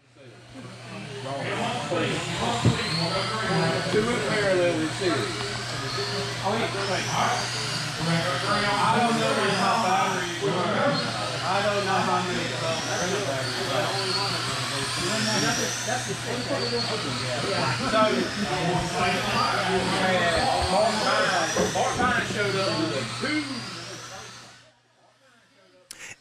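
Pit-area background: several people talking over a steady low hum, with repeated short rising whines of electric RC cars on the track. It fades in at the start and cuts out about a second before the end.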